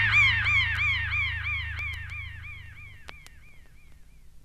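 The tail end of a post-punk record: a high warbling electronic tone that rises and falls in pitch about four times a second, fading away over a low hum. A few faint clicks sound along the way.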